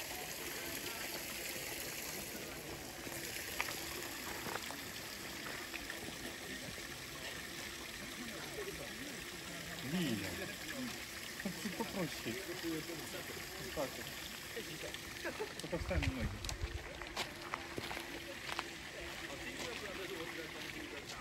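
Steady trickle of a small garden stream. Low, indistinct voices talk about halfway through and again near the end.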